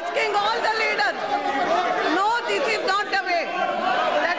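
Many voices shouting and talking over one another at once in a large, echoing parliamentary chamber: members of the house in uproar, heckling during a disrupted sitting.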